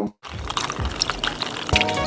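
Liquid poured from a glass bottle into a foam cup: a noisy, splashy pour with scattered clicks, starting after a brief dropout. A music track with steady tones comes in near the end.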